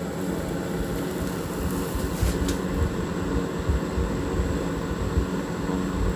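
A steady low rumbling hum, with faint constant tones, like a machine or vehicle in the background.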